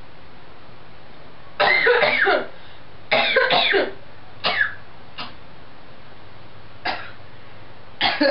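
A person coughing in a run of fits: two longer bouts of coughs, then single short coughs spaced further apart.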